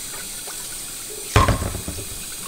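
Kitchen tap running into a kettle held in a stainless steel sink, filling it. A single hard clunk comes a little past halfway.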